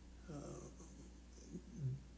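A man's soft, drawn-out hesitation "uh", then faint short voice or breath sounds near the end as he gathers himself to speak again.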